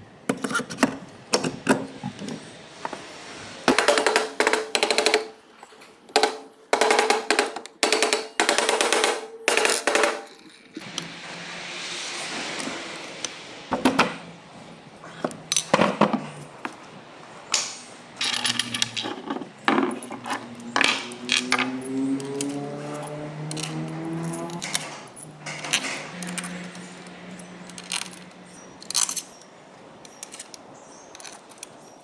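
Metal engine parts clinking and knocking on a workbench as a Honda 110cc engine's crankcase is taken apart: a long series of sharp clanks, several of them ringing briefly. About two-thirds of the way through come a few rising squeaky tones.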